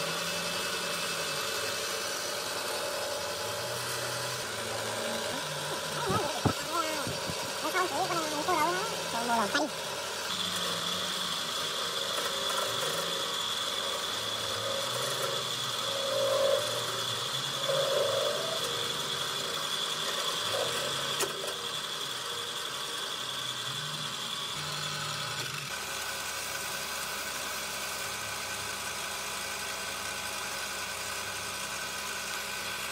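Metal lathe running steadily as a tool in its tool post turns down a spinning wooden handle blank, cutting shavings from it. A thin high whine sounds from about ten seconds in until about twenty-five seconds.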